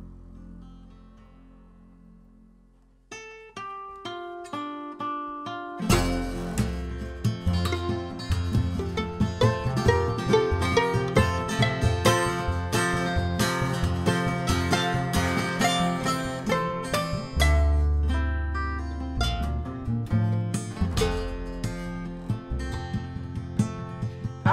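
Instrumental break of a live acoustic folk band: a held chord dies away, then about three seconds in a violin plucked like a mandolin picks out a melody, and about six seconds in acoustic guitar and upright double bass come in with it.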